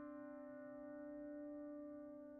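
A sustained, drone-like musical tone rich in overtones, fading slowly, with a slight wavering in its lowest note.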